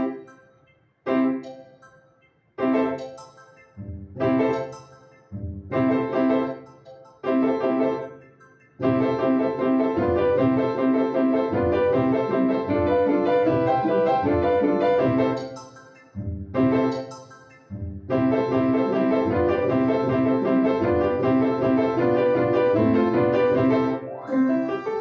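Upright acoustic piano played: for the first several seconds separate chords are struck and left to ring and fade, then from about nine seconds in it runs into a continuous flowing passage, broken briefly near sixteen seconds before carrying on.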